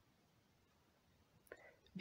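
Near silence: room tone, with a faint short sound about one and a half seconds in.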